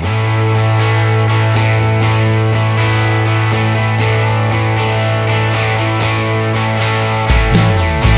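Background rock music: a held, distorted electric guitar chord ringing steadily, with the low notes shifting a little after seven seconds in.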